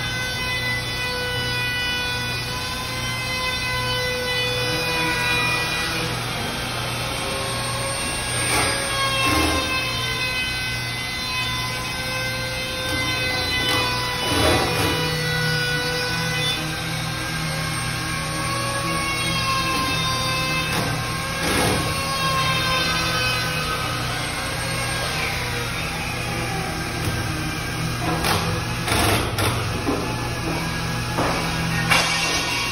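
Electric trim router running with a steady high whine that wavers slightly in pitch as it is worked along the edge of a panel. A few sharp knocks sound over it, several of them near the end.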